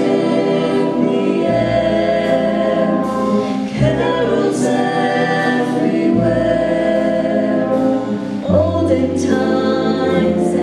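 A school jazz ensemble with a small group of vocalists performs: sustained sung and horn chords over piano and upright bass, the bass note moving about every two seconds.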